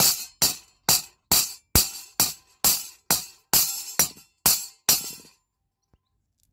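A small steel hammer striking the balled end of a metal wire held in a steel drill gauge on an anvil, about a dozen ringing metallic blows at a steady two a second, flattening the ball into a nail-head rivet. The hammering stops about five seconds in.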